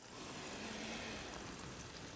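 A man breathing in deeply and slowly under a towel over a pot of hot water, a faint steady hiss of breath that swells just after the start and slowly fades.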